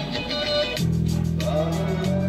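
Four-string electric bass guitar being played: a few notes in the first second, then a low note that rings on steadily from about a second in.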